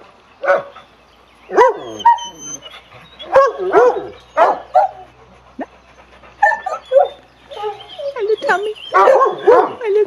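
Dogs barking and whining at a fence, many short barks and yelps with brief pauses between, the loudest near the end.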